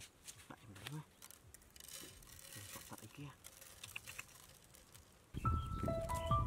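Faint small clicks and scratches of grain being scattered onto a plate set into the dirt, with hands working the soil around it. Background music with steady held notes comes in about five seconds in and is the loudest sound.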